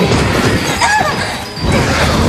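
Film fight soundtrack: driving score music overlaid with smashing hit sound effects, with a crash about halfway through.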